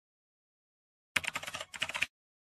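Computer keyboard typing sound effect: a quick run of key clicks starting about a second in, as text is typed into a search bar.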